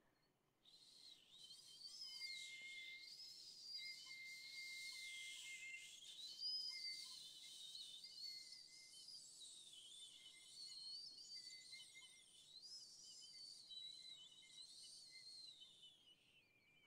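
Piccolo played softly in its high register. Airy, wavering tones slide up and down, starting about half a second in, over a faint steady lower tone.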